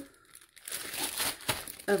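Crinkly plastic snack packaging being handled, a run of crackling starting about half a second in.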